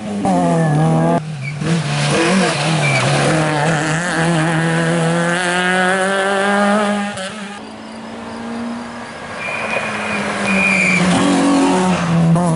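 Rally car engines revving hard at full throttle, the pitch climbing and dropping through gear changes and lifts, with a brief fall in revs about a second in. Past the middle the engine sound fades as a car moves away, then builds again as another comes through, with a couple of short high-pitched squeals near the end.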